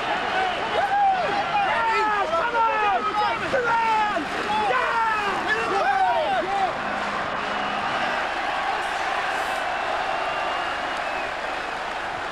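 Stadium crowd of football fans cheering and chanting, with many voices rising and falling over one another. About halfway through it settles into a steadier din of crowd noise.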